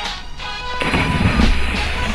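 Background music, with the splash of a person plunging feet-first into the sea about a second in, a rushing burst of water noise lasting around a second.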